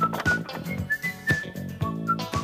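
Closing theme music: a high whistled tune over a bouncy accompaniment with a steady beat.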